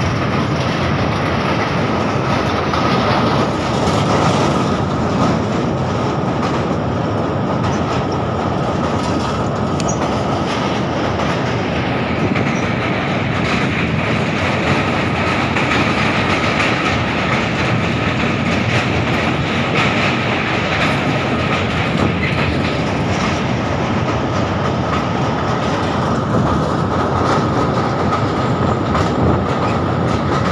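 A passenger train running at speed, heard from on board the coach: the steady rumble and clatter of wheels on the rails as it crosses a steel girder bridge, with a faint steady high whine over it.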